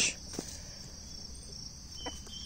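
Steady, high-pitched insect chorus trilling without a break.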